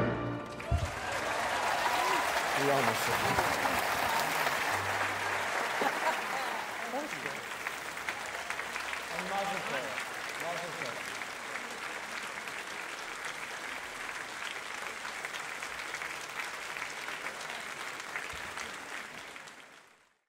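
Concert audience applauding as an orchestral piece with piano ends, with scattered shouts from the crowd. The applause slowly thins and fades out at the very end.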